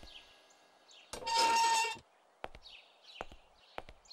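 Footsteps on a hard floor at a slow walking pace, with small birds chirping in short, repeated falling notes. A loud noisy burst lasting just under a second comes a little after one second in.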